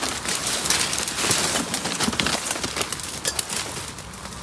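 Leaves and dry twigs rustling and crackling as a person forces their way into dense undergrowth, a busy run of small snaps and brushing that eases off near the end.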